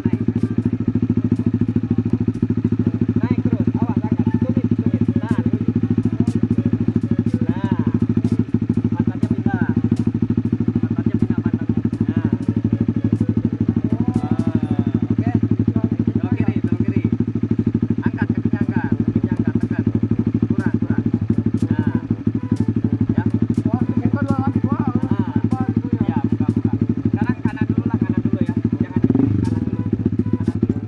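A racing motorcycle's engine idles steadily, with a quick rise in revs near the end.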